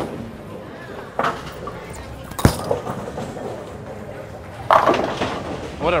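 Roto Grip Hustle X-Ray bowling ball hitting the lane on release with a sharp thud a little before halfway through, then crashing into the pins about two seconds later, over the steady hum of the bowling centre.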